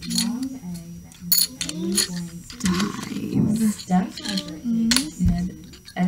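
Speech: voices sounding a word out slowly, with a few light clicks of letter tiles being picked up and set down on the table.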